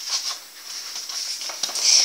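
Paper rustling and crinkling as a stiff paper envelope is handled and its flap folded shut, with a louder rustle near the end.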